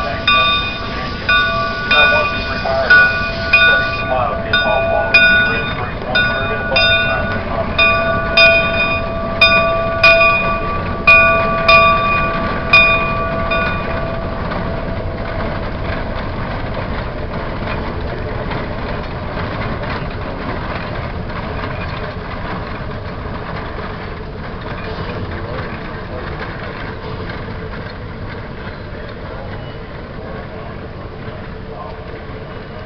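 Steam locomotive bell ringing in regular strokes about every three-quarters of a second, over the sound of the Shay geared steam locomotive working as it pulls out. The bell stops a little under halfway through, and the locomotive's steady running sound carries on, slowly fading as it draws away.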